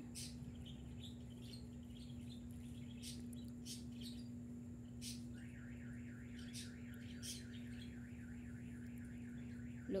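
Faint yard ambience: scattered short, high bird chirps over a steady low hum. About halfway through, a fast, evenly pulsing trill starts and keeps going.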